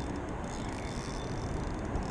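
Steady hum of road traffic on a freeway overpass, with no distinct events.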